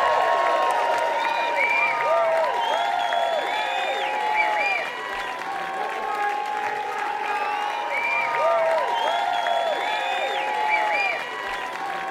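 Theatre audience applauding and cheering, with many voices calling out over the clapping.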